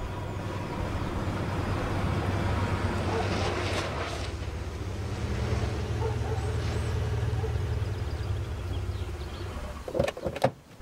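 Chevrolet Impala sedan driving slowly up a street and pulling to a stop, its engine and tyres a steady low hum. A click comes at the very end.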